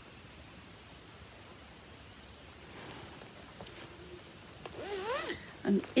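A fabric project bag being unzipped and handled, with soft rustling, in the second half after a quiet start. Near the end there is a short hum of voice that rises and falls in pitch.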